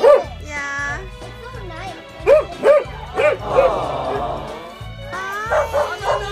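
Sled huskies barking and yipping in several short bursts, with a higher rising whine, over background music with a steady beat.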